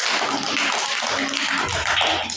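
A group of children clapping, many overlapping hand claps with no pause between them.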